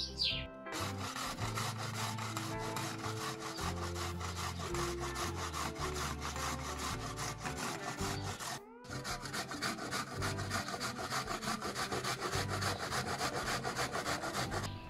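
Carrot grated on a stainless-steel box grater into a bowl: a quick run of rasping strokes. After a short break about two-thirds of the way in, the grating starts again on a white vegetable. Background music with bass notes plays underneath.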